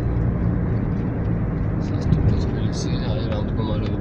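Steady low engine and road rumble of a car being driven, heard from inside the cabin.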